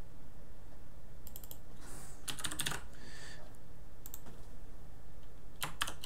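Computer keyboard keys tapped in a few short clusters of clicks, over a steady low hum.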